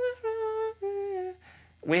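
A man humming three held notes that step down in pitch, each about half a second long, imitating a vocal melody line of the song.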